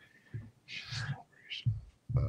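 Quiet whispered voice: a short breathy murmur about a second in, among a few faint low bumps.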